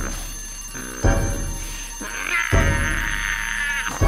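Cartoon twin-bell alarm clock ringing over background music, which has a heavy beat about every second and a half. The ringing starts about halfway through and stops just before the end, as the clock is grabbed to silence it.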